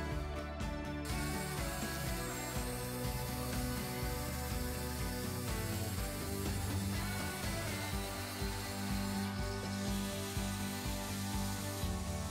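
Angle grinder with a cutting disc cutting through square steel profile tube, a steady grinding hiss that starts about a second in and stops about three-quarters of the way through, under background music with a steady beat.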